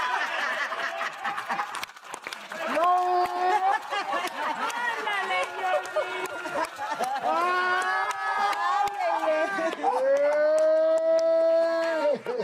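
A man and a woman laughing hard and long at a joke, with hand claps through the laughter. Near the end one voice holds a long, drawn-out high cry of laughter.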